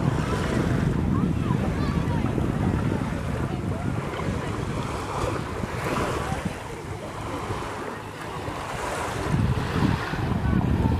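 Wind buffeting the microphone: a steady low rumble that eases a little about seven seconds in, with faint distant voices of people in the water.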